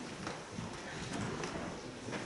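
A congregation getting to its feet: scattered knocks, shuffling and rustling as people rise from the pews.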